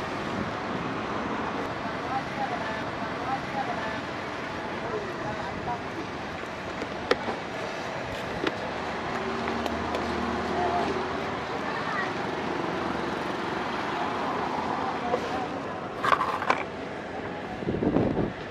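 Steady road traffic noise from passing cars and motorbikes, with faint voices in the background and a few light clicks about halfway through.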